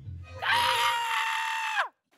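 A person's long, high-pitched scream, 'kya-a-a', held on one pitch for about a second and a half and dropping off sharply at the end.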